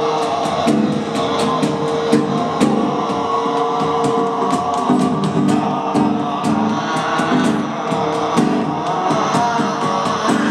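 A live rock band playing, with drums keeping a steady beat under guitar and a note held through the first half.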